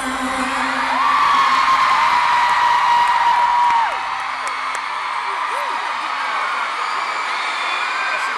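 Arena crowd of fans screaming and cheering as the song's music stops, with long high-pitched screams loudest for the first few seconds before settling into steady cheering.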